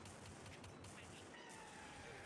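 Near silence: faint room tone, with a faint thin tone slowly falling in pitch over the second half.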